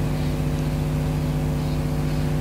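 A machine's steady low hum, even in pitch and level throughout.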